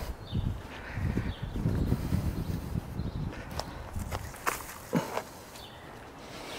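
Footsteps walking across a grass lawn, a run of soft irregular thuds with rustling that stops after about four seconds, followed by a few light knocks.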